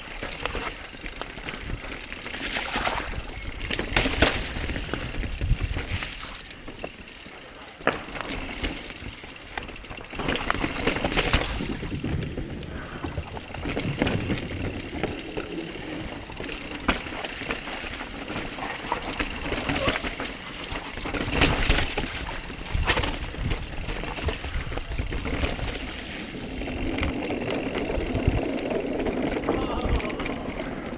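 Mountain bike being ridden over a dirt and rock trail: continuous tyre and riding noise broken by frequent irregular knocks and rattles.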